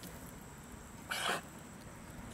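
A dog gives one short, breathy huff or snort about a second in, over a faint outdoor background.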